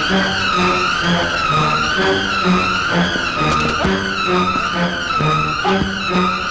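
Film background score: a high electronic tone wavering up and down about once a second, like a slow siren, over a pulsing low bass pattern, with a couple of short hits.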